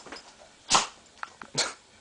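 A dog at play gives two short, sharp, noisy huffs, a little under a second apart, with faint ticks between them.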